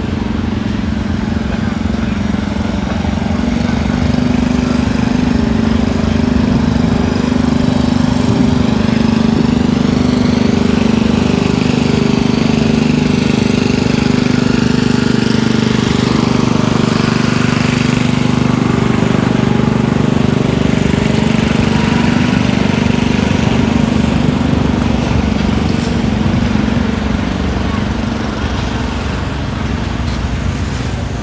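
An engine running steadily at a constant speed, growing louder through the middle and easing off a little near the end.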